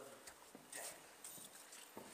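Near silence with a few faint scattered taps and rustles.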